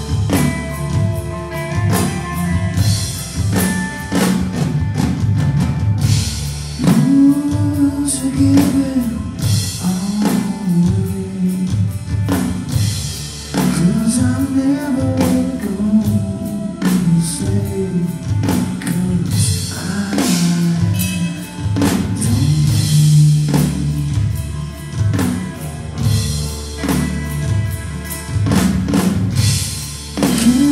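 Hard rock band playing live and loud: distorted electric guitars, bass guitar and a drum kit driving a steady beat.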